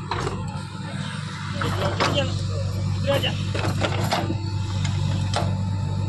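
JCB backhoe loader's diesel engine running steadily under load, with several sharp knocks and clatters of rock against the steel bucket as it digs.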